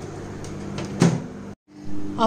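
Convection microwave oven running with a steady low hum while baking, with a single sharp click about a second in. The sound then cuts out abruptly.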